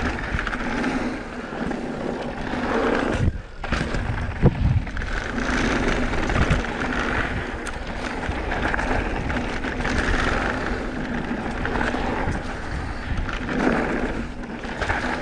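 Mountain bike descending a dry dirt trail: knobby tyres rolling and crunching over loose dirt and leaves, the bike rattling over the bumps, with rushing wind noise. A few sharp thumps stand out about four and a half and six and a half seconds in.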